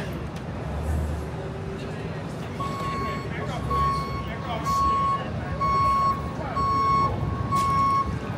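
Vehicle reversing alarm beeping about once a second, starting a few seconds in, over low street traffic rumble.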